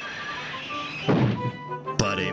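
Background music with a loud crashing thud about a second in: a model steam engine braking too late and slamming to a sudden stop, throwing its heavy load into the air. A short sharp knock follows at the very end.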